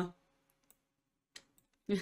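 A woman's speech trails off into a quiet pause holding two short clicks, a faint one and then a sharper one about half a second later, before she starts speaking again near the end.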